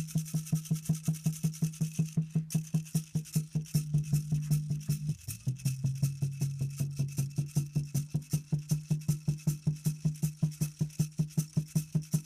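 Hand rattle shaken in a fast, even rhythm of about five shakes a second, accompanying a low sung note held steady, which drops to a lower pitch about five seconds in.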